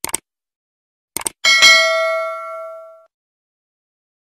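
Sound effects of a subscribe-button animation: two quick mouse clicks, two more about a second later, then a bright notification-bell ding that rings out and fades over about a second and a half.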